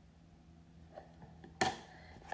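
Quiet room tone with a faint click about a second in, then one short, sharp noise about one and a half seconds in that dies away quickly.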